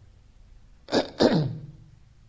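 A man makes a single short throat sound about a second in: a sharp noisy burst followed by a brief voiced tail falling in pitch.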